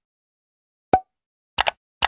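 Animated end-screen sound effects: a single short pop about a second in, then a quick double click like a mouse click near the end, with dead silence between.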